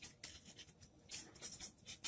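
Faint sound of a pen writing on paper: a run of short separate strokes.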